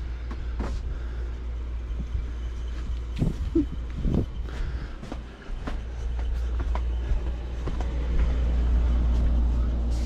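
Handling noise from a handheld camera carried down a storage aisle: a low steady rumble with scattered light knocks and rustles of things on the shelves, and a cardboard box handled near the end.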